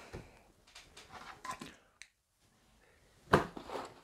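Faint rustles and knocks of a cardboard set box being handled on a tabletop, the loudest a short sharp knock a little over three seconds in.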